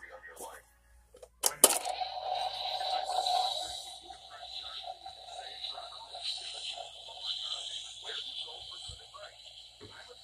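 A sharp click about a second and a half in, then the electronic sound effect of a Ghostbusters ghost trap prop: a steady buzzing hum with a high whine over it, loudest for the first couple of seconds and then running on more quietly.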